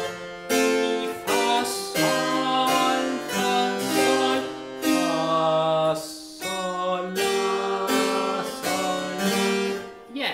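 Harpsichord playing a partimento bass realised in full chords, a new chord struck about once a second with a short break about six seconds in.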